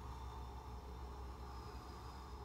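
Quiet room tone: a steady low hum with a faint steady higher tone above it and no distinct events.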